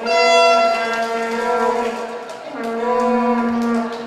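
A vuvuzela blown in two long blasts, each on one steady note: the first lasts about two and a half seconds, the second about a second and a half.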